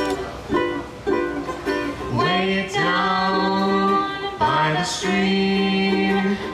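Ukulele strumming chords. About two seconds in a voice comes in on long held notes, each scooping up into pitch, over the ukulele.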